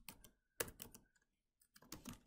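Faint computer keyboard typing: a few scattered key presses with pauses between them.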